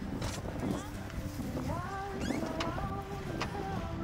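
Indistinct, distant speech from a public-address announcer over a loudspeaker, with a low wind rumble on the microphone.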